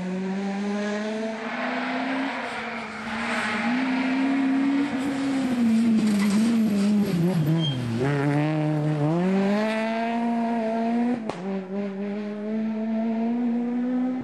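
A Peugeot 208 rally car's engine running at high revs, loud and steady. Its note dips sharply about seven to eight seconds in as the car slows for a corner, then climbs again as it accelerates away.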